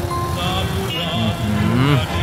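Military motorcycles and armoured vehicles passing in a parade: a steady low engine rumble, mixed with music and a voice.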